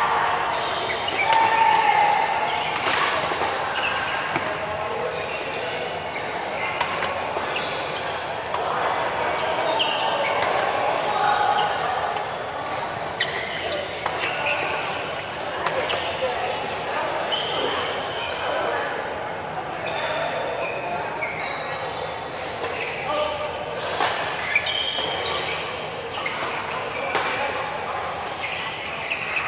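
Badminton rallies in a large, echoing hall: repeated sharp racket strikes on the shuttlecock, with short shoe squeaks on the court mat.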